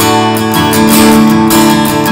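Acoustic guitar strummed in a run of full, ringing chords, without singing.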